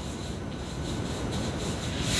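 Steady soft rubbing of hands rolling a log of dough back and forth on a floured countertop.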